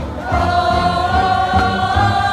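A high school show choir singing together, holding one long note that comes in about a third of a second in.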